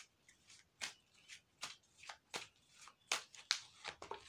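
A deck of tarot cards being shuffled by hand: a string of irregular soft flicks and rustles as the cards slide and slap together.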